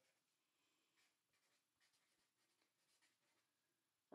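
Near silence, with very faint short strokes of a felt-tip marker writing on paper.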